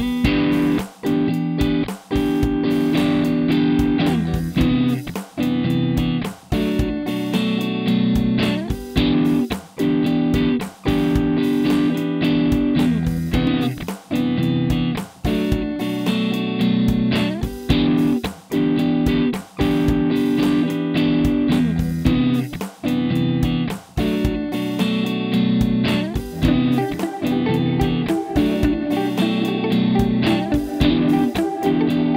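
Electric guitar playing a rhythmic chord part, with short muted breaks between strokes and phrases.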